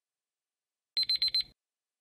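Countdown timer alarm: four quick, high-pitched electronic beeps in about half a second, about a second in, signalling that the time is up.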